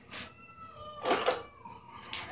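A cat meowing: one drawn-out meow that sinks slightly in pitch, with a few sharp knocks, the loudest about a second in.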